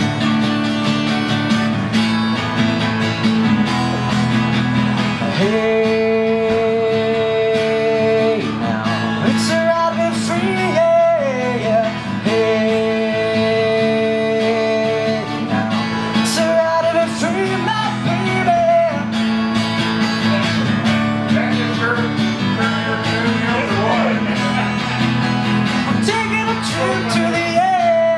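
Live acoustic guitar strummed through an instrumental break of a rock song, with long held melody notes and sliding, bending notes on top and no lyrics.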